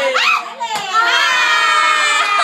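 Group of people shrieking and laughing in excitement, with one long, high-pitched scream held from about a second in.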